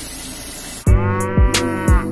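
A steady hiss for nearly a second, then background music starts abruptly: sustained synth-like tones over a beat of about two drum hits a second.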